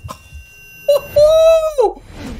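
A loud, high-pitched yell held for about a second, its pitch arching and then dropping off at the end, just after a shorter cry.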